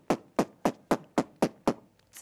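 A quick, even series of sharp clicks, about four a second, with a short pause near the end.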